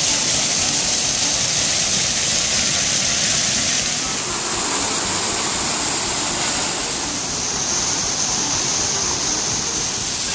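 Water cascading over a granite block wall as a small waterfall: a steady, loud rush.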